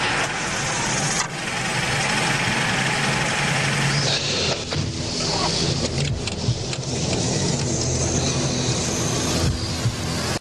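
A car engine being started, then running steadily, under a loud hiss of road and wind noise.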